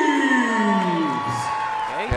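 Ring announcer's drawn-out call of a fighter's name over the PA, one long note sliding slowly down in pitch, with a crowd cheering and a steady high whoop held through it.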